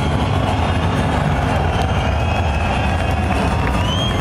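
Symphonic death metal band playing live through a festival PA, recorded from the crowd: distorted guitars and fast drumming blur into a loud, steady, dense wall of sound heavy in the bass.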